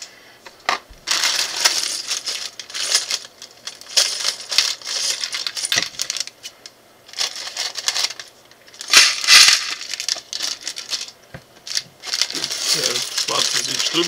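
Small plastic building bricks clattering as they are tipped out of plastic bags into plastic tubs, with bags crinkling and many rapid clicks. The loudest rush of clatter comes about nine seconds in.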